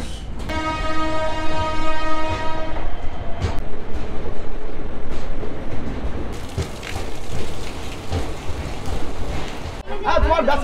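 A train horn gives one steady blast of a little over two seconds. The train then runs on with a rumble and the clack of wheels over rail joints as it pulls into the station.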